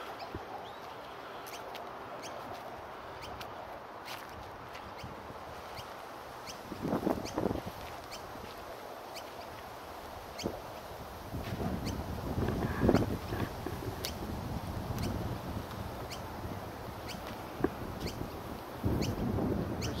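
Outdoor ambience: a steady background hum with scattered faint clicks, broken by louder noisy bursts about seven seconds in, again around twelve to fourteen seconds, and near the end.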